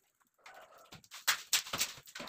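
Steel plastering trowel scraping and knocking against a plastic mortar bucket as wet cement mortar is scooped up, a quick run of short clicks and scrapes starting about a second in.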